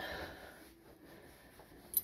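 A pause in a man's talk: a faint breath near the start, then room tone, and one short mouth click just before he speaks again.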